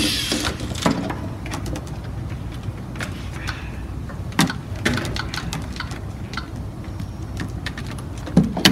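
Scattered clicks and knocks of plastic LEGO robot parts and attachments being handled and set down on the game table, over a steady low hum.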